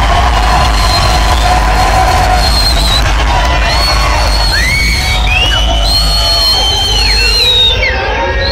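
Live hip-hop beat with heavy bass, played loud over a club sound system, with the crowd shouting. From about halfway through, several high rising and falling cries from the audience ring out over the music.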